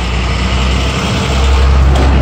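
Low rumble of a motor vehicle's engine, growing louder about halfway through.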